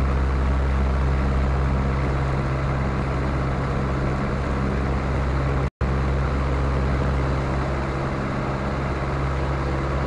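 Luscombe 8A's four-cylinder piston engine and propeller running steadily at takeoff power during the takeoff roll, heard from inside the cabin as a constant low drone. The sound cuts out for an instant a little before six seconds in.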